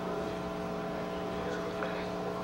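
Steady background hum of a presentation room, made of several fixed low tones, with no speech.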